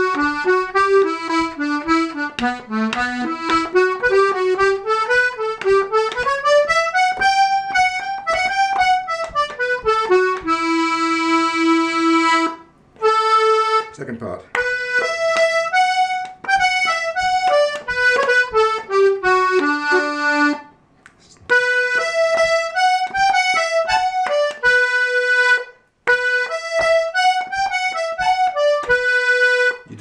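C#/D two-row button accordion playing an Irish reel melody note by note, with a few long held notes and three brief stops.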